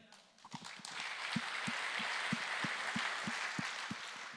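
Audience applauding in a large hall, building from about half a second in and then holding steady, with faint low knocks repeating about three times a second underneath.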